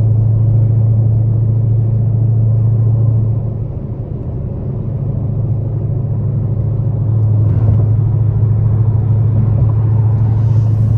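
Modified 900 hp Dodge Hellcat's supercharged V8 heard from inside the cabin at highway speed: a steady low drone over road noise. It eases off about three and a half seconds in and comes back strong about seven seconds in.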